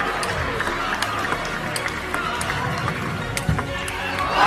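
Sharp clicks of a table tennis ball struck back and forth in a long rally, roughly one every three-quarters of a second, over steady background music.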